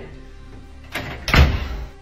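A door shut firmly: a sharp knock just after a second in, then a heavy thud about half a second later.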